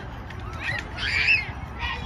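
High-pitched shouts from players and spectators at a youth soccer match, loudest about a second in, over crowd chatter.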